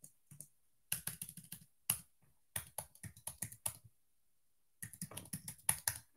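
Typing on a computer keyboard: three quick runs of keystrokes separated by short pauses.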